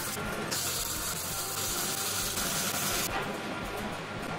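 MIG welder arc crackling and hissing in one steady run of bead, starting about half a second in and stopping about three seconds in.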